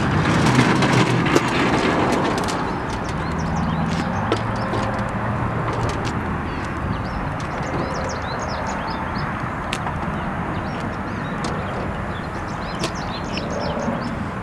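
Metal clanks and rattles of a folding wheeled miter saw stand with a sliding miter saw on it, slid and tipped out of a pickup truck bed and set down on its wheels, over a steady low rumble. Birds chirp in the background.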